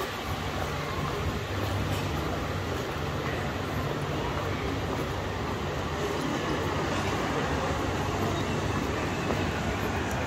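Steady low hum of a tram with the wash of city street noise around it.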